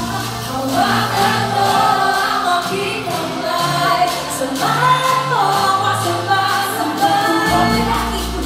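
Female pop group singing live into microphones over a backing track through a concert sound system, with several voices at once. The deep bass drops out for a few seconds in the middle and comes back in near the end.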